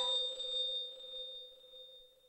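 A bell-like chime from the background music rings out and slowly fades away after the beat stops.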